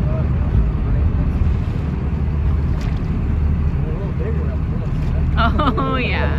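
Steady low rumble of wind on the microphone and a boat's engine running. A voice comes in briefly near the end.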